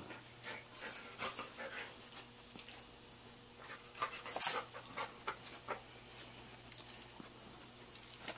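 A dog panting softly, with faint scattered clicks and rustles as it moves about its bedding in a wire crate.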